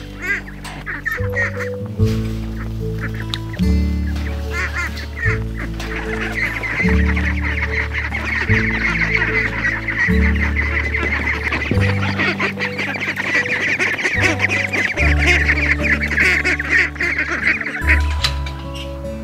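A flock of domestic ducks quacking and chattering together over background music with slow, steady low chords; the calls build from about six seconds in and are loudest near the end.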